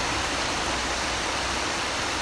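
Steady, even rushing of river water flowing over stones.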